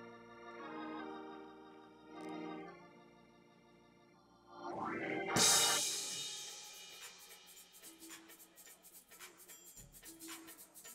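Organ playing held chords, then a rising run into a loud crash about five seconds in that rings away over a couple of seconds, followed by faint irregular ticking.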